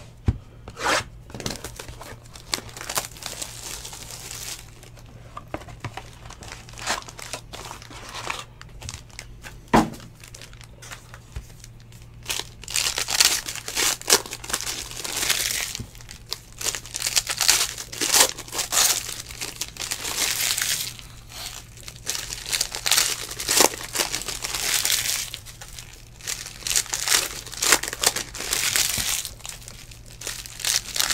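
Plastic wrapping of a box of trading cards torn and crinkled as the box is unsealed and its packs are ripped open. A few sharp clicks come in the first ten seconds, then the crinkling comes in repeated bursts from about twelve seconds in.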